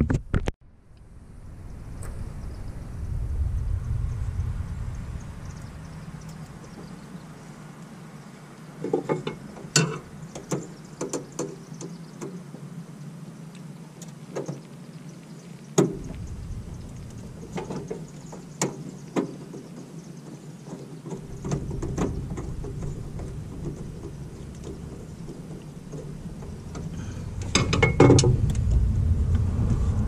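Small clicks and rustles of hands working wires and a screwdriver at a terminal strip, scattered through the middle, with a louder burst of handling noise near the end, over a steady low rumble.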